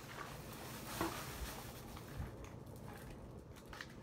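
Faint handling noise from cardboard-backed ribbon packaging being set down and sorted, with a few soft taps and light rustles.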